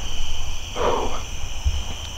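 Crickets and other insects chirring steadily in a dusk field, with a short breathy sound about a second in and a low rumble underneath.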